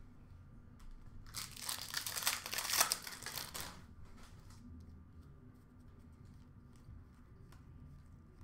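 Thin plastic card packaging crinkling as it is handled, a dense crackling rustle for about two and a half seconds, followed by faint light clicks of cards being handled.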